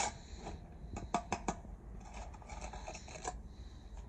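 Steel brick trowel scraping and tapping against clay bricks and wet mortar: a few sharp taps about a second in, then a stretch of scraping as mortar is worked around the first course.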